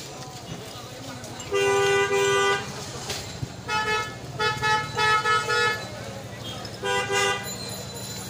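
Vehicle horns honking in street traffic: one long honk about a second and a half in, a quick burst of several short honks a little later, and one more honk near the end, over a steady traffic din.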